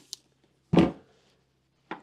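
A single short thud, with a faint click just before it and another near the end.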